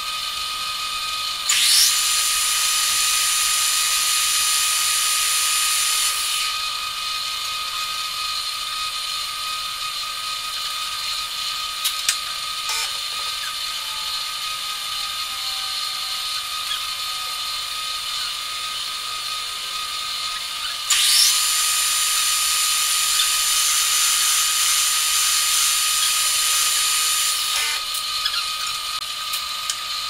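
Metal lathe spindle started twice, each start a rising whine that settles into a few seconds of running before stopping, over a constant high-pitched shop tone. A sharp click comes near the middle, while the chuck is at rest.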